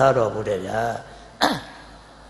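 A man's voice speaking into a microphone trails off, then a single short throat-clearing about a second and a half in, sliding quickly down in pitch.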